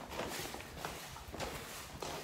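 A few footsteps at irregular intervals on the floor of a stone tunnel.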